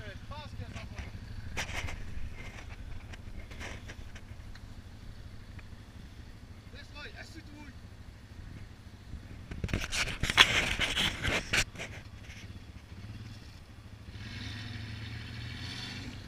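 A quad's engine running steadily under load as it pulls on a tow rope hitched to an SUV stuck tilted in a ditch. A burst of loud knocks and scrapes comes about ten seconds in, the loudest sound here.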